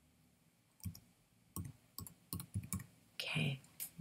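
Computer keyboard keys being typed: about seven separate keystroke clicks, unevenly spaced, starting about a second in.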